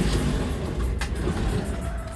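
Minibus engine running, a steady low rumble heard from inside the bus, with a single click about a second in.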